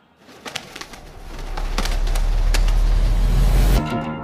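Film-trailer sound effect: a deep rumble that builds up in loudness over about three seconds, with scattered clicks over it, then cuts off sharply just before the end.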